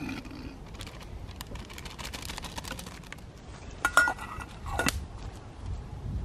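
A metal spoon scraping and clinking against small steel camping pots as curry is spooned out, with small sharp crackles from a campfire throughout. The loudest sounds are a couple of brief ringing metal clinks about four and five seconds in.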